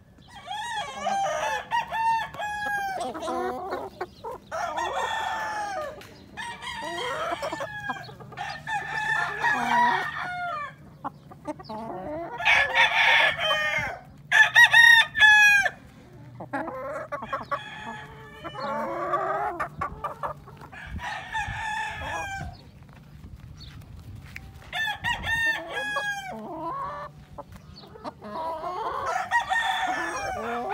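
Gamefowl roosters crowing one after another, about a dozen crows in all, some overlapping. The loudest crows fall around the middle.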